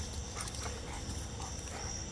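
Crickets trilling steadily, with a few faint, soft sounds from Rottweilers moving about on the grass.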